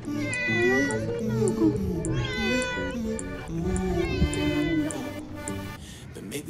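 A ginger domestic cat meowing three times, each a long drawn-out call of about a second, which the filmer takes for hunger.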